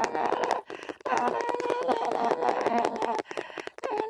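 A voice singing a slow, wordless 'la la' melody in long held notes. One phrase ends about half a second in, a longer one runs from about one second to past three, and a new one begins near the end. Faint clicking crackle runs underneath.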